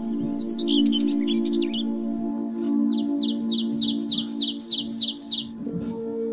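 Soft ambient music of sustained low held tones with a bird singing over it: a quick varied twittering phrase near the start, then a fast run of about a dozen identical downward-sliding chirps, roughly five a second.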